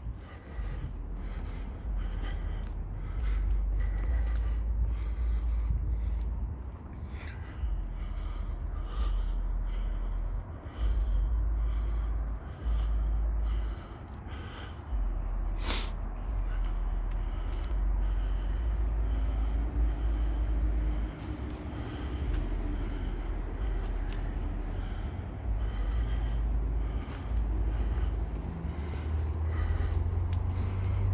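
A steady, high-pitched chorus of insects, with footsteps on the paved trail at a walking pace and a low rumble on the microphone. A single sharp knock comes about sixteen seconds in.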